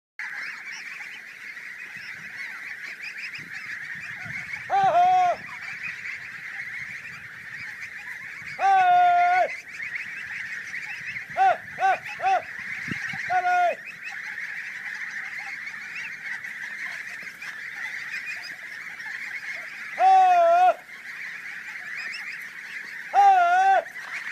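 A huge flock of white domestic geese honking and gabbling together in a dense, continuous din. Louder single honks stand out from it now and then, about eight in all, three of them short and in quick succession.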